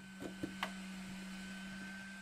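A few faint clicks of a laser module being fitted onto a CNC mill's spindle, the sharpest just over half a second in, over a steady low hum.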